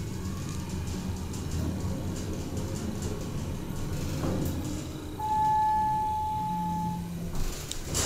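Schindler hydraulic elevator car travelling with a steady low hum. About five seconds in, a single steady electronic tone sounds for nearly two seconds, the car's arrival signal. A couple of short clicks follow near the end as the car stops.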